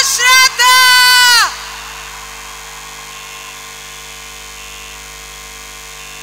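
A woman's voice through the PA microphone calling out in long, loud, drawn-out notes for about the first second and a half, then a steady, much quieter background hum.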